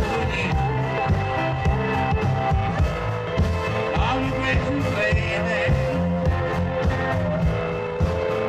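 Live band playing a song on piano, upright bass and drums, with a steady beat of drum hits over a moving bass line.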